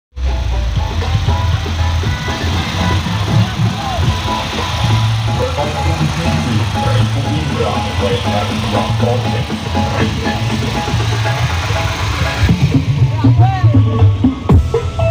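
Loud dance music with heavy bass played through a miniature 'horeg' sound system, with voices over it. About twelve and a half seconds in it gets louder and the bass heavier.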